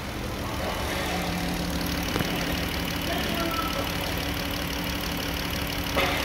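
2017 Dodge Grand Caravan's 3.6-litre V6 idling steadily.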